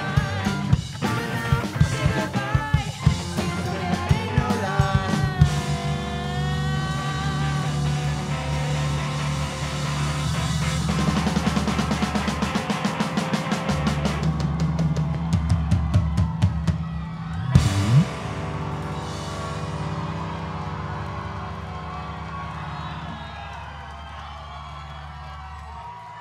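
Live rock band playing on electric guitars and drum kit, the drumming building into fast repeated hits. About 18 seconds in it ends on a loud final hit, and the last chord rings on and slowly fades.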